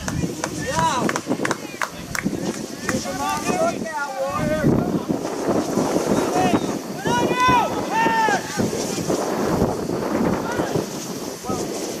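Scattered shouts and calls from soccer players and people on the sideline, heard across an open field with wind noise on the microphone.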